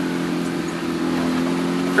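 A vehicle's engine running steadily at an even, low pitch while driving slowly along a dirt trail, heard from inside the cabin.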